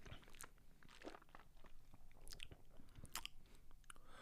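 Faint mouth sounds of people sipping and tasting a dark beer: scattered small lip smacks and clicks.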